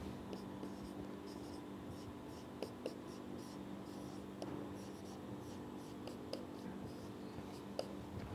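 Marker pen writing on a whiteboard: a run of short, faint strokes with a few light taps, over a low steady hum.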